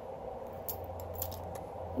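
A few faint light clicks of a metal necklace chain being handled, over a low steady hum.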